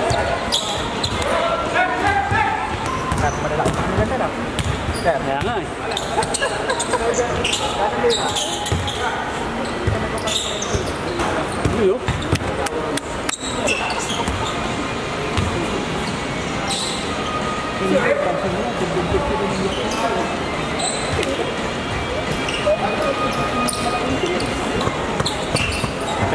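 Basketball bouncing on a hardwood indoor court during play, with repeated short impacts, mixed with players' voices calling across the court in a large hall.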